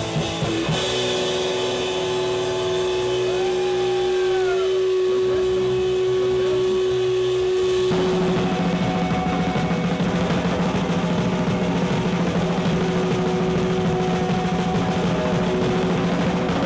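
Live hardcore band playing loud: a single guitar note is held ringing, with some warbling glides over it, for about seven seconds, then the full band with pounding drums crashes back in about eight seconds in.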